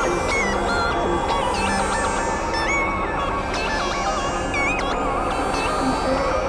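Experimental electronic synthesizer music from a Novation Supernova II and Korg microKorg XL: a dense, noisy drone bed under quick high-pitched bleeps that jump abruptly from pitch to pitch, several a second, at a steady level.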